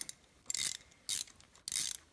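Socket-wrench ratchet clicking in three short runs as it is worked back and forth, loosening a spark plug through a deep-well spark plug socket on extensions.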